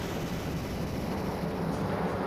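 Dramatic background score for a TV serial: a sustained low drone under a dense wash of noise, holding steady without a beat.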